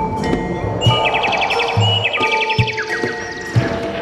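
Javanese gamelan music accompanying a jaranan dance: ringing metallophone notes over low drum strokes, with a fast high rattling run twice in the middle.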